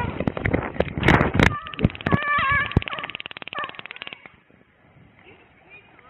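Taser fired at a dog: a rapid, even train of clicks from the taser's electrical cycle for nearly three seconds, with the dog crying out over it, stopping suddenly about four seconds in. Loud knocks come before the clicking starts.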